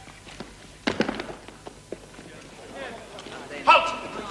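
Footsteps of a group of men shuffling and moving off, with a sharp knock about a second in and scattered small clicks. Faint low voices run underneath, and there is a short loud call near the end.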